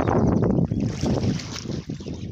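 Wind buffeting the phone's microphone: a loud, steady, low rushing rumble.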